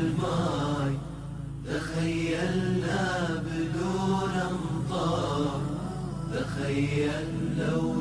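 Nasheed: melodic chanting by voices over a steady low drone, with the melody moving in phrases of a second or two.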